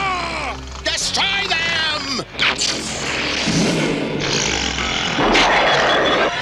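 Cartoon battle sound effects over background music: falling-pitch cries and a wavering wail in the first two seconds, then a sustained noisy energy-blast effect from about four and a half seconds in.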